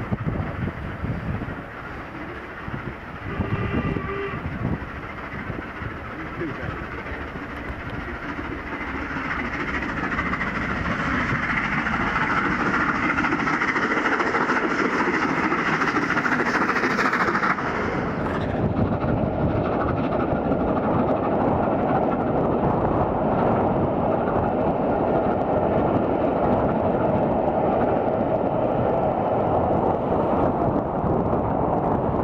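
LMS Royal Scot class steam locomotive 46115 Scots Guardsman working hard up a steep bank into a strong headwind. A short whistle sounds about three seconds in, and its exhaust grows louder as it nears and passes. At about eighteen seconds the sound changes suddenly to a steady rumble of coaches rolling past, with wind on the microphone.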